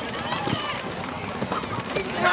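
Indistinct shouting voices on a football field, with a few sharp knocks during the play.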